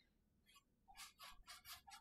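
Near silence, with about five faint, short, scratchy strokes in the second second: a paintbrush working on canvas.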